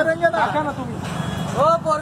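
Men's voices talking loudly in an argument, with street and traffic noise underneath.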